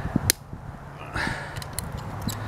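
A few sharp clicks and clacks of pliers and a small motor with its circuit board being pried out of a gutted microwave oven's sheet-metal case.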